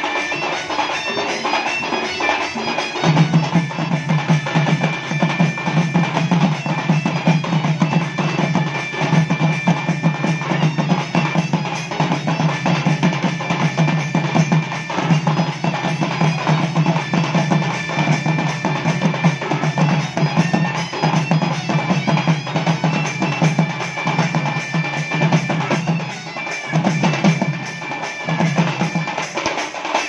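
Live Western Odisha (Sambalpuri) folk ensemble music: several dhol drums beaten in a fast, steady rhythm under a sustained melody line, with a brief drop in level a few seconds before the end.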